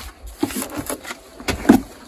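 Knocks and rustling from a person climbing into a truck cab and moving over the leather seats, several separate bumps with the loudest near the end.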